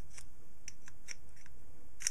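Steel vernier caliper jaw scribing a line along an aluminium plate: a string of short, sharp, high-pitched scratches as the jaw point is dragged over the metal.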